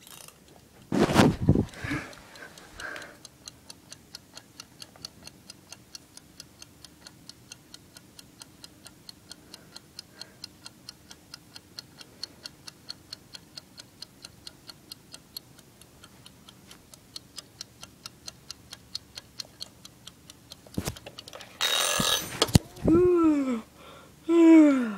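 Clockwork ticking, even and quick at about three ticks a second, after a couple of knocks about a second in. Near the end it gives way to a loud noisy burst and sounds that swoop down in pitch.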